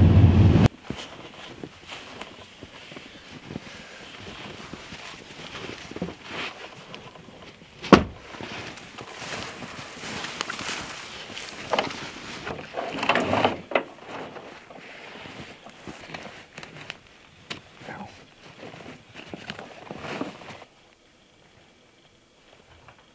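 A pickup's engine running, heard inside the cab, cuts off within the first second. Gear is then handled at a truck outdoors: rustling, knocks and clicks, with one sharp clack about eight seconds in.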